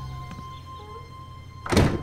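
Quiet background music fading, then one loud, short thud near the end.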